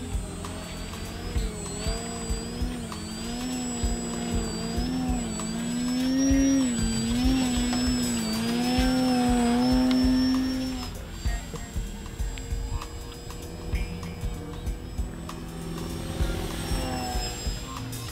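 Electric motor and 12x6 propeller of a Multiplex Fun Cub RC plane (E-flite Power 10 brushless motor) whining, its pitch wobbling up and down with the throttle, loudest about halfway through, then dropping away about eleven seconds in. Background music with a steady beat plays throughout.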